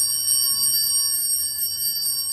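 Altar bells ringing with a bright, shimmering high ring that holds and slowly fades, rung as the priest receives Communion.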